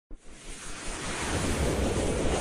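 Intro whoosh sound effect: a rush of noise that swells steadily louder, with a low rumble underneath.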